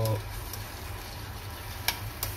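Quiet stir-fry cooking at a gas stove: a faint steady hiss from the saucepan under a steady low hum while tomato pieces are dropped in by hand, with one sharp click near the end.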